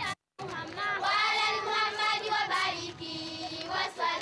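A group of children's voices singing together.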